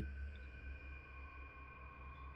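Faint, steady ambient drone: a few high tones held over a low hum.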